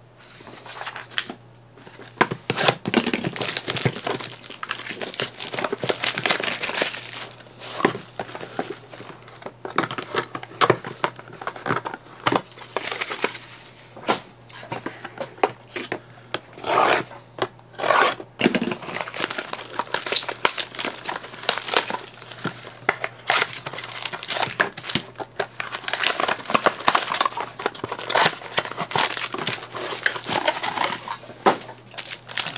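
Clear plastic wrapping being torn off trading-card boxes and crumpled, with a foil-wrapped card pack handled: a continuous crackly crinkling broken by frequent sharp rustles and tears.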